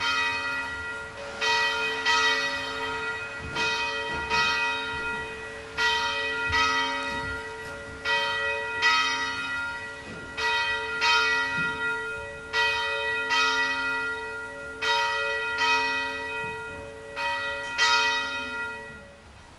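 A church bell ringing, struck over and over in uneven pairs of strokes, each stroke ringing on into the next.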